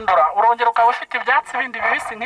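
A man speaking without pause through a handheld megaphone, his voice thin and radio-like.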